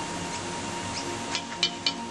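Steady rushing noise of wind in stormy weather, with faint held music-like tones underneath and a few short sharp clicks about a second and a half in.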